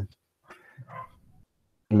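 A dog barking faintly in the background, a few short, soft barks in the first half, heard over a video-call microphone.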